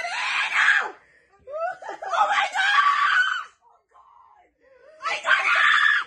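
A young woman screaming at her friends in three loud outbursts with short pauses between them.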